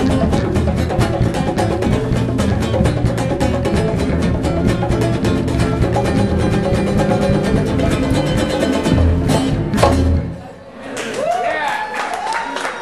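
Live acoustic band of acoustic guitar, upright bass and hand percussion playing a song to its end, closing on a final loud hit about ten seconds in. After a brief drop, the audience cheers and applauds.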